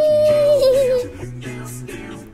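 Background cartoon music with a wordless cartoon-character vocal note: a long high 'ooh' held, then wobbling downward and stopping about a second in.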